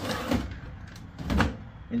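Small wooden drawers of an old watch-parts cabinet sliding in and out, with a short scrape near the start and a louder wooden knock about one and a half seconds in as a drawer is pushed shut.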